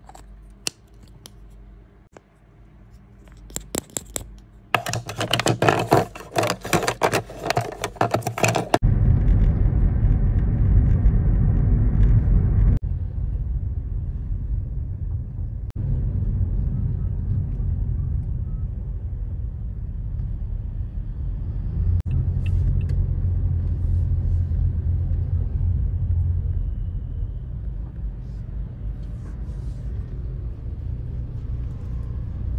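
Loud rattling and scraping for a few seconds, then a steady low vehicle rumble, as from inside a moving car, that shifts in level a few times.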